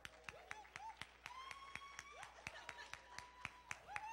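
Sparse, irregular hand clapping from a small congregation, mixed with several long drawn-out whoops of cheering that rise and then hold.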